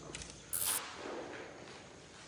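Faint footsteps and scuffing on a rubble-strewn concrete floor, with a brief sharp burst of hiss about half a second in.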